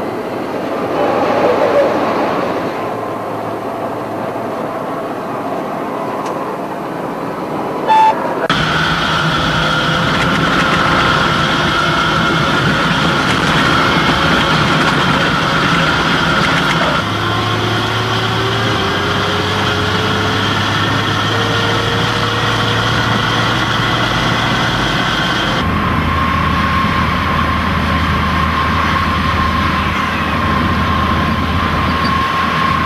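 Stryker armoured vehicle's diesel engine and drivetrain running on the move, heard from inside the hull beneath an open hatch: a loud, steady drone with high whines over it. The tone changes abruptly a few times, and a whine rises slowly in pitch in the middle as the vehicle gathers speed.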